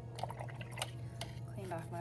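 A few light clicks and taps from the watercolor painting materials, several in the first second and one more a little past the middle. A voice starts near the end.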